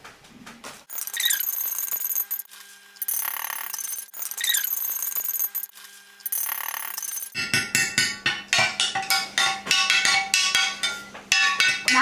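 Background music, then, from a little past halfway, a metal spoon clinking repeatedly against a glass jar as borax is spooned in and stirred.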